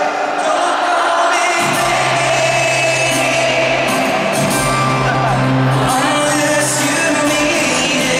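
Live stadium concert sound: a man singing with acoustic guitar through the PA, with the audience shouting and whooping. A low, steady bass note comes in about two seconds in.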